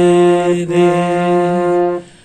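Harmonium note held on one key while a man sings the sargam syllable "re" with it twice, a short break between the two, in a slow paired-note alankar exercise. The note stops suddenly at the end.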